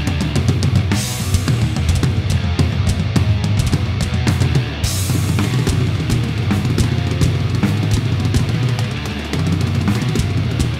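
Heavy metal music with a drum kit played hard over it: rapid bass drum and snare strokes, and cymbal crashes about a second in and again about five seconds in. The drums are a TAMA Starclassic kit with bubinga shells and Sabian cymbals.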